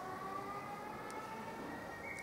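Faint, steady whine of several tones sounding together, slowly rising in pitch.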